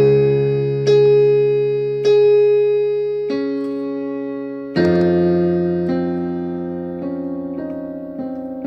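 Slow piano music: chords struck about once a second, each left ringing and fading away, with a quick run of repeated notes coming in near the end.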